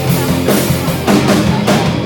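Live heavy metal band playing an instrumental passage: distorted electric guitars and bass over a drum kit hitting a steady beat.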